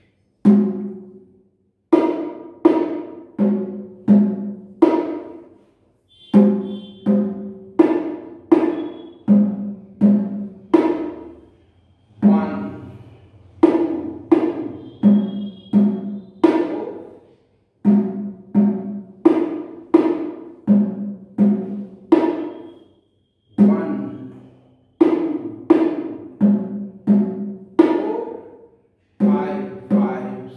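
A pair of bongos played by hand, slowly and steadily: an eight-beat bar with single strokes on the first, fourth and eighth beats and double strokes on the rest, repeated about every six seconds with short gaps between bars. Strokes alternate between the low-pitched larger drum and the higher-pitched smaller one.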